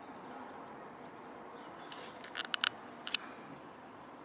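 Quiet outdoor background hiss, broken about two and a half seconds in by a quick run of sharp clicks and two more shortly after, with one brief high chirp early on.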